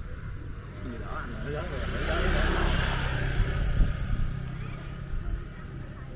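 A vehicle passing by: its noise swells over about two seconds, peaks, then fades away.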